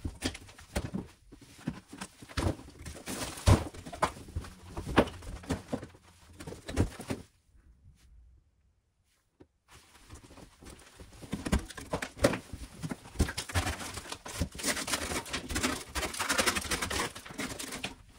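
Plaster and rotted wood being pulled by hand out of a wall, crumbling and dropping in irregular knocks and crackles. The sound drops out to dead silence for about two seconds around eight seconds in, then the crackling comes back denser.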